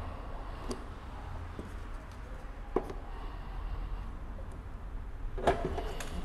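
Sparse faint clicks and scrapes of a plastic spatula prying at the seam between a car headlight's lens and housing, testing whether the heat-softened glue seal will let go, over a low steady hum.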